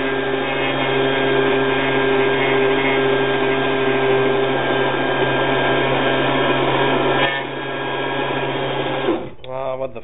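Electric blender running steadily, mixing a flour-and-water glue paste. About seven seconds in there is a click and the sound drops, then the motor stops about two seconds later.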